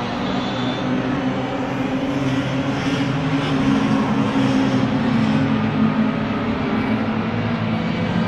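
Several Mini Se7en racing Minis running at race speed down the straight, a steady engine note with small shifts in pitch as the cars go by.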